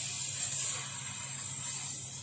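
CO2 laser cutting head cutting a thin wood sheet: a steady high hiss at the nozzle over a low machine hum, the hiss swelling briefly about half a second in.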